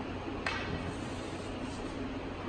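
A single sharp wooden clack about half a second in, two wooden jo staffs striking each other in paired staff practice, over a steady background hum.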